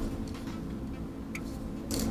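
Two small sharp clicks from a camera and its mounting plate being handled on a gimbal, one a little past halfway and one near the end, over a steady low hum.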